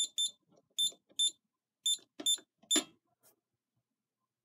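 Scantronic SC-800 alarm keypad beeping at each key press: seven short high-pitched beeps spread over about three seconds, as a user code followed by star, zero, pound is keyed in to arm the panel in instant mode.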